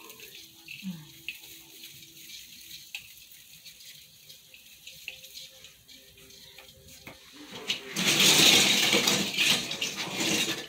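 A rushing, rustling noise starts about eight seconds in and lasts a couple of seconds, the loudest sound here. Before it there are only faint light clicks and rustles.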